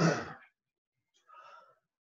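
A short breathy exhale like a sigh, then a fainter breath a little over a second later.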